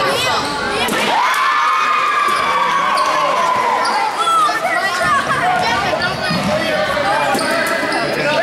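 Basketball game sounds in an echoing gym: a ball bouncing on the hardwood floor and short knocks and squeaks from play, under overlapping voices of players and spectators calling out. About a second in there is one long drawn-out call.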